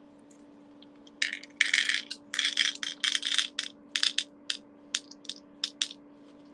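Small beads being poured into a container: a dense rattling clatter starting about a second in and lasting a couple of seconds, then thinning to a scatter of single clicks as the last beads drop.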